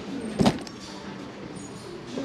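A single sharp knock about half a second in, from shoes being handled on a store shoe shelf, followed by low background noise.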